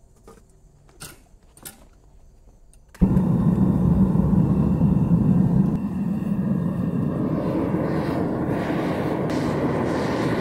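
Gas burner of a metal-melting furnace running steadily while it melts scrap aluminium in a crucible. It comes in suddenly about three seconds in, after a faint stretch with two light clicks.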